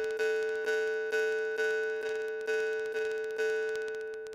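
Jaw harp with a brass frame, its reed plucked steadily about twice a second. It gives a clear drone on one pitch with a bright overtone held still above it. The last pluck rings out near the end.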